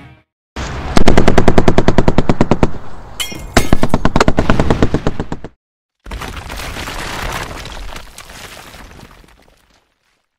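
Two bursts of rapid automatic gunfire, about ten shots a second, each lasting about two seconds. After a short gap comes a sudden crash of noise that dies away over about three seconds.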